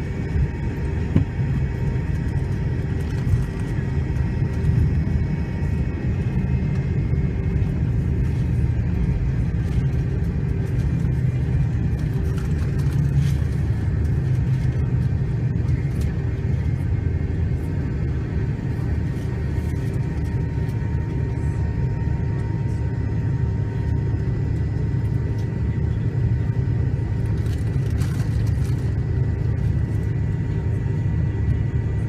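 Cabin noise of a Delta MD-88 taxiing, its rear-mounted Pratt & Whitney JT8D engines at low thrust: a steady low rumble with a few faint steady whining tones above it, at an even level throughout.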